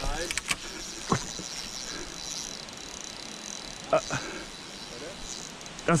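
Spinning fishing reel whirring as a hooked fish is played, with a few scattered clicks and knocks.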